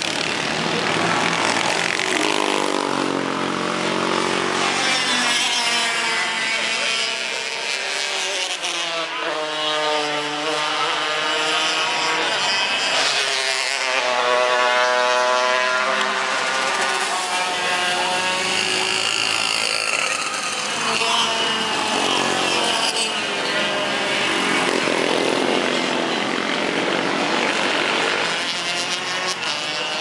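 Racing kart engines running on the circuit, their pitch repeatedly rising and falling as the karts accelerate and ease off through the corners.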